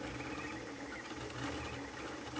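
Voron 0.2-based CoreXY 3D printer running a fast print: a low, steady mechanical hum with a few held tones from its motors and fans.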